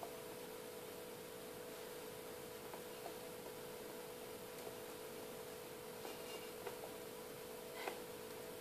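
Faint, steady electrical hum from audio equipment: one mid-pitched tone with weaker tones above it, broken only by a few small clicks.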